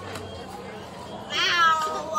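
A girl's high-pitched yell about a second and a half in, loud over faint background chatter, its pitch falling as it goes.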